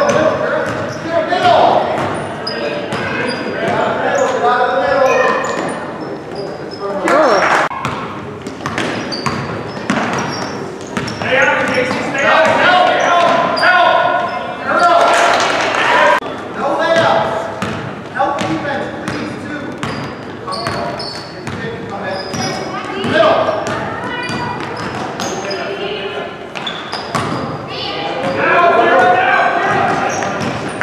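Basketball dribbling and bouncing on a hardwood gym floor during a youth game, with repeated sharp bounces and shouting voices from the players and spectators, echoing in the large hall.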